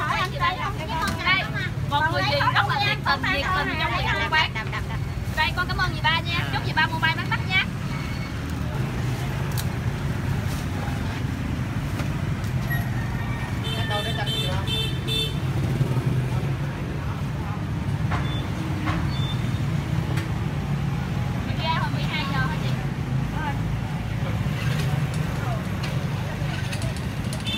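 Street traffic of motorbikes in a steady low hum throughout. A horn beeps for about a second and a half around fourteen seconds in.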